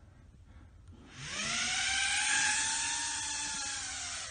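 Small whoop drone's motors and ducted propellers (a Potensic A30W) spinning up about a second in: a high whine that rises in pitch as it lifts off, then holds steady in flight, dipping slightly near the end.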